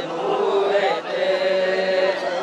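A group of men chanting a noha, a Shia lament, together, holding a long note through the second half.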